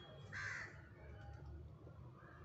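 A crow caws once, a single harsh call about half a second in, over the faint scratching of a pencil writing on paper.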